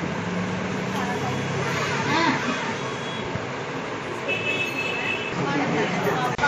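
Outdoor street ambience: steady traffic noise with faint voices in the background and a brief high tone about four seconds in.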